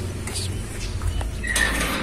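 Stainless-steel gate being pushed open: a few light metallic clinks, then a short scraping squeak near the end, over a steady low hum.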